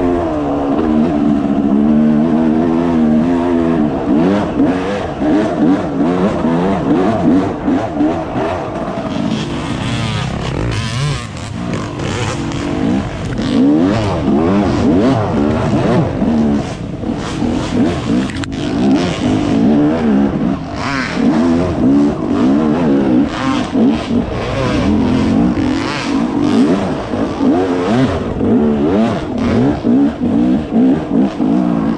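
Yamaha YZ250 two-stroke dirt bike engine revving up and down without pause as it is ridden along a rough, rutted trail, with frequent knocks and clatter from the bike over bumps and roots.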